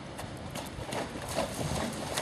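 Hoofbeats of an Irish Draught cross Thoroughbred horse cantering over firm sandy ground, a quick run of knocks that gets louder as it comes on.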